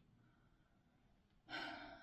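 Near silence, then about one and a half seconds in a woman takes an audible breath, a short breathy sigh.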